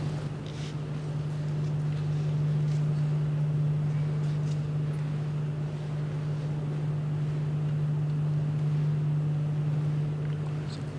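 A steady low mechanical hum at one fixed pitch, unchanging throughout.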